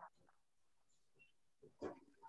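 Near silence over a video-call connection, broken by one brief faint sound near the end.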